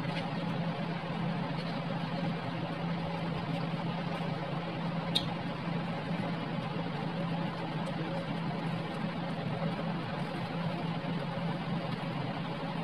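Steady machine hum: a low constant drone under an even hiss, with one faint click about five seconds in.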